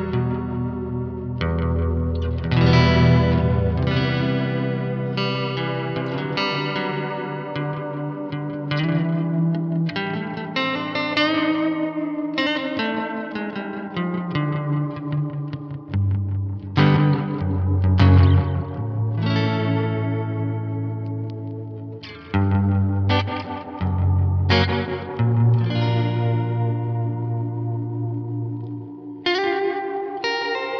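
Electric guitar played through a Catalinbread Adineko oil can delay pedal. Chords and held low notes are struck every second or two, each ringing on and overlapping the next through the pedal.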